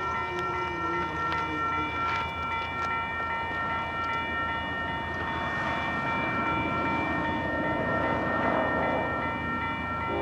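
Grade-crossing warning bell ringing steadily while a freight train's rumble grows louder as it approaches, swelling in the second half.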